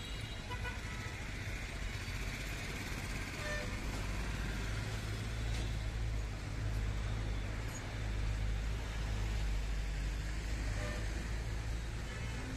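Busy street ambience: a steady rumble of road traffic with a brief vehicle horn toot.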